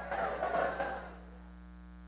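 A brief audience response, a mix of voices from the crowd lasting about a second, over a steady electrical hum that carries on alone afterwards.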